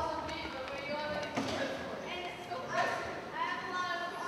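Voices speaking in a large hall, indistinct and without clear words.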